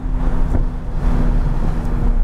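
Porsche GT3's flat-six engine holding a steady note at speed, heard from inside the cabin over wind and road noise.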